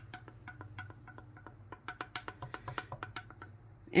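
Wooden stir stick clicking against the sides of a plastic measuring cup while stirring a thick pouring-medium mixture: quick, irregular light ticks, several a second.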